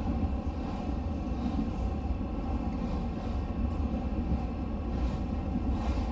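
Steady low rumble of a passenger train running along the track, heard from on board.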